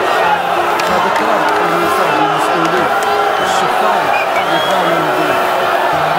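Large crowd of football supporters chanting and singing together, a dense, unbroken mass of many voices.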